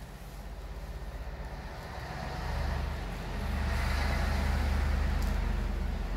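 Low, steady droning rumble that swells louder from about two seconds in, with a hiss that rises to a peak around the middle and eases off: a drone laid over the footage, not a sound made by anything in the picture.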